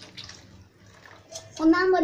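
Ladle stirring and sloshing liquid in a steel pot: soft splashing with small scrapes and clinks. About one and a half seconds in, a child's voice starts talking, much louder than the stirring.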